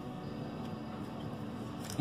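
Soft background music playing quietly and steadily.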